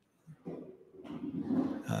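A man's low, rough, throaty vocal noise close to the microphone. It starts about half a second in and grows louder, just before he speaks.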